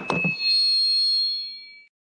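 High electronic chime ringing for about a second and a half, then fading out.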